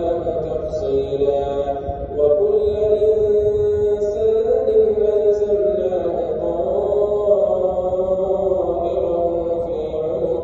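A man's voice chanting an Islamic prayer recitation in Arabic, in long held notes that glide slowly up and down, with a short break about two seconds in and another around six seconds.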